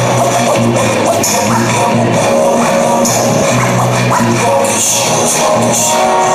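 Live band playing the instrumental opening of a gospel-soul song, with sustained bass notes and repeated cymbal splashes, loud and steady as heard from within the crowd in a large hall.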